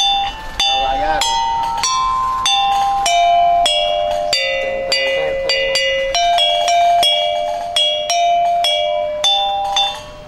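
A melody played on a tuned, struck percussion instrument with ringing, bell-like notes, about two to three notes a second, falling to its lowest notes midway and rising again. A man's voice is heard briefly near the start.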